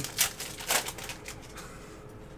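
Foil trading-card pack wrapper crinkling as it is torn open, in a few short, sharp rustling bursts in the first second or so.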